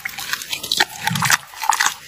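Giant panda chewing a crumbly food with its mouth open: rhythmic wet chewing with crisp crunching and crackling.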